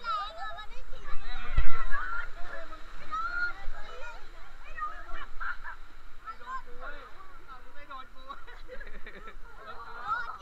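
Several people laughing and calling out excitedly on a boat ride, with a single low thump about one and a half seconds in.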